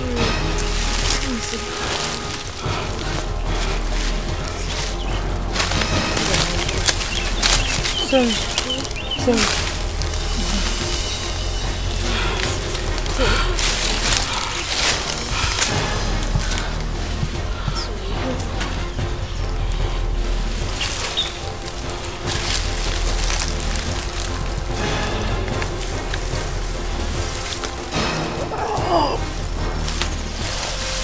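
Background film music with a steady low drone, over the crackle and rustle of dry leaves and sticks being trodden and brushed. Brief voice sounds come and go.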